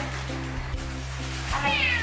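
A domestic cat meowing once near the end, a short high call that falls in pitch, over background music with a steady low bass.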